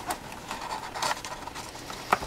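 Rustling and light clicks of packaging being handled: a plastic bag and the cardboard insert of a keyboard box, with a slightly louder click about a second in.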